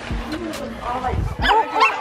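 A dog barking, a few quick barks in the second half.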